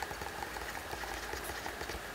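Light ticking and scratching of a stylus writing on a drawing tablet, over a faint steady electrical hum.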